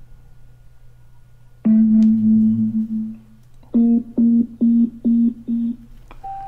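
Tronsmart T7 Bluetooth speaker powering on after its firmware update: one sustained start-up chime that fades, then a quick string of short beeps, about three a second.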